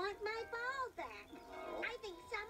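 A high-pitched, childlike character voice speaking in a lilting way over soft background music, heard through a television's speaker.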